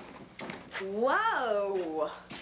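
A woman's voice in one drawn-out call or exclamation, its pitch rising and then falling, lasting about a second and starting near the middle.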